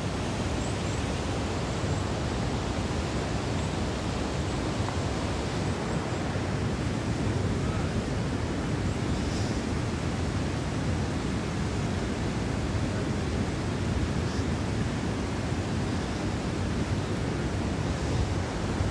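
Steady wind rushing over a phone's microphone, an even roar heaviest in the low end, with no breaks.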